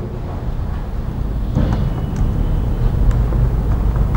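Steady low background rumble, with a few faint clicks from a keyboard or mouse as windows are switched.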